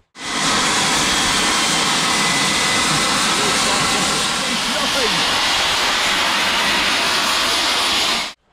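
Steam locomotive venting steam with a very loud, steady hiss that starts abruptly and cuts off suddenly near the end, loud enough to make a bystander cover his ears.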